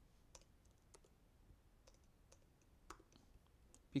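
Near silence with a handful of faint, sharp clicks from a computer keyboard and mouse, spaced unevenly over the few seconds.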